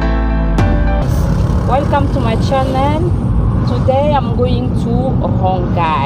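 The last notes of intro music stop under a second in. A steady low rumble of a car's engine and road noise, heard inside the moving car's cabin, then runs on. Over it a woman's voice comes in animated bursts.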